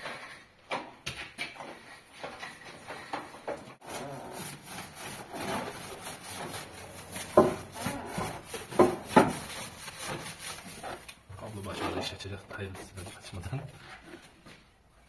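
A stiff-bristled brush scrubbing the soapy, bare painted steel rear floor pan of a Skoda Favorit in irregular rasping strokes, with a few sharp knocks around the middle.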